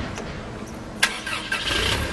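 A vehicle engine being started: a sharp click about a second in, then the engine cranks and surges louder near the end.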